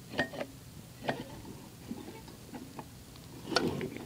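Starter mechanism of an old Sears push mower being turned by hand, its pulley and toothed starter gear giving a few irregular clicks about a second apart, the loudest near the end.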